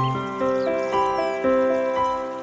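Slow solo piano music, a handful of single notes struck one after another and left to ring. Faint high chirps and a light trickle of water sit beneath it.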